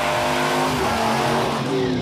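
The Dodge Ram SRT-10's Viper-derived 8.3-litre V10 held at high revs through a smoky burnout, with the noise of the spinning rear tyres. The pitch is steady and dips slightly near the end.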